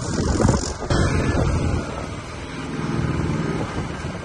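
A motor vehicle passing on the road, its engine hum swelling for a second or so about halfway through and then fading.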